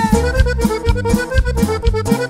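Button accordion playing a quick run of notes over electric bass and drums, in an instrumental passage of a norteño-banda song.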